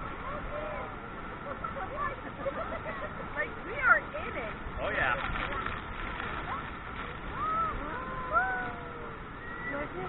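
Steady rush of Niagara Falls and its spray, with passengers' scattered cries and whoops rising and falling over it, busiest about four to five seconds in and again near the end.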